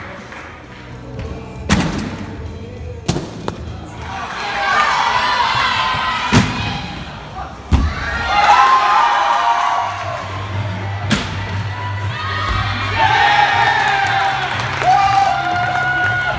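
Crowd of spectators cheering and calling out in a gymnastics gym, punctuated by several sharp thuds of vaulting: feet on the springboard and landings on the mat. The cheering swells twice, about four seconds in and again near the end.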